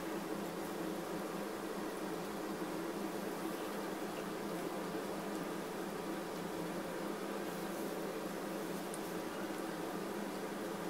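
Steady room tone: an even hum with hiss and no distinct events.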